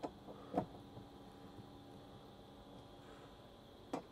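Mostly quiet, with a steady faint hum and a few faint clicks of a hand-held Phillips screwdriver on the screws of a steel MOLLE panel as they are snugged down. The clearest click comes about half a second in.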